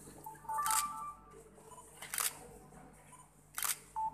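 Camera shutters clicking three times, about a second and a half apart, as photos are taken of a handover.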